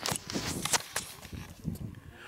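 Irregular light knocks and rustling, with no voices.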